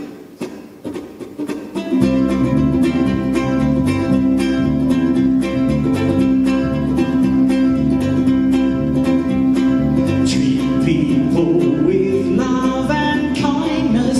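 Ukulele strummed together with an electric bass guitar in an instrumental passage of a live song. After about two seconds of light picking, the full strummed rhythm and bass line come in and run on evenly.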